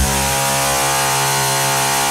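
A heavily distorted, buzzing synth tone held steady at one pitch with no drums under it, from an industrial drum and bass track.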